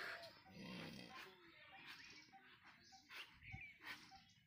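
Faint animal calls, short and repeated several times a second, over near silence.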